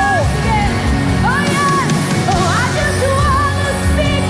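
Live contemporary worship music: a band plays steady chords while voices sing a sliding melody.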